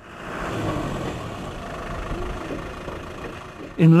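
A motor vehicle engine running steadily, fading in at the start.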